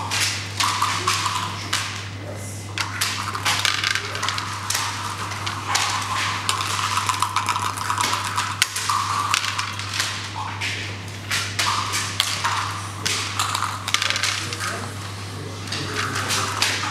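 Backgammon checkers being picked up and set down on a wooden board: quick, irregular clicks and clacks throughout.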